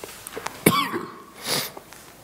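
A person coughing: a sharp, voiced cough about two-thirds of a second in, then a shorter, breathy, hissing burst about a second later.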